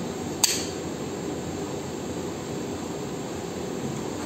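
Spring-loaded Monopty core biopsy needle firing once with a sharp click about half a second in, taking a tissue core. Under it runs a steady mechanical hum of room equipment and ventilation.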